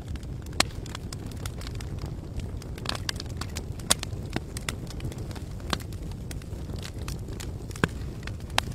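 Fire sound effect: a steady low rumble of flames with irregular sharp crackles and pops throughout, the loudest pops about half a second in, near four seconds and near the end.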